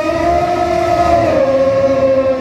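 Bhaona music: one long held sung note, steady, dipping slightly in pitch partway through.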